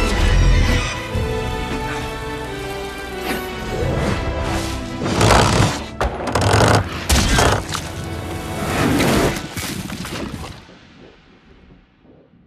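Dramatic film score music under battle sound effects, with several heavy impacts and crashes in the middle, fading away near the end.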